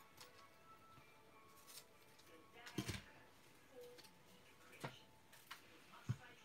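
Near silence broken by a few soft taps and clicks, the clearest about three seconds in and two more near the end: hands handling a roll of glue dots and a pokey tool on a craft mat.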